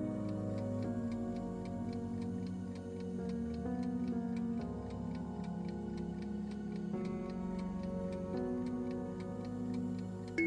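Countdown timer clock ticking at a steady, quick pace over soft background music.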